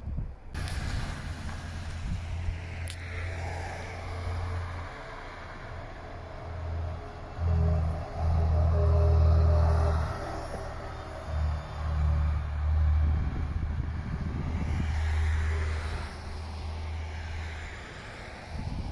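A diesel city transit bus driving past, its engine and tyres swelling to their loudest about eight to ten seconds in and then fading, with a faint steady whine from the drivetrain. Low gusty wind rumble on the microphone runs underneath.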